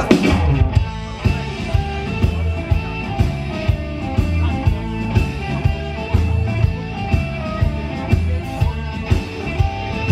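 Live blues-rock band playing: electric guitars and bass guitar over a steady drum beat, opening with a loud hit.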